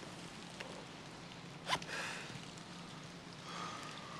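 Quiet background ambience with a steady low hum. A faint click comes a little after the start, a brief sharper sound a little under two seconds in, and a faint thin tone near the end.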